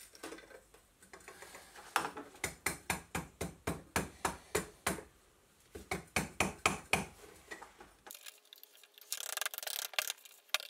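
A regular run of sharp knocks, about three a second, from working the steel-pipe packing box that holds the lead screw as it is packed with crushed charcoal for case hardening. About eight seconds in the sound cuts to softer rustling and light clicks.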